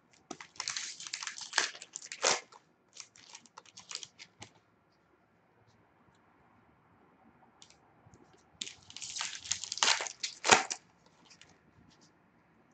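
Wrapper of a hockey card pack being torn open and crinkled, in two bursts, one near the start and one about eight seconds later, with light clicks of cards being handled between them.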